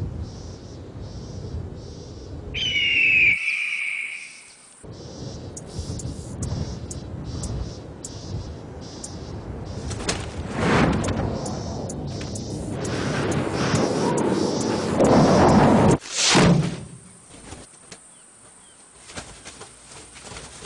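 A hawk's high, falling scream about two and a half seconds in, followed by a run of sharp ticks about two a second and loud whooshing rushes of air, like beating wings, that swell twice in the second half.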